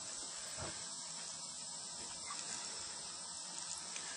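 Faint steady high-pitched hiss with no distinct events in it.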